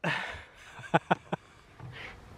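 A man's laughter tailing off in a breathy exhale, then three short clicks about a second in.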